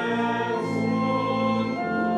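Organ playing held chords under a sung offertory hymn, the chords changing a few times.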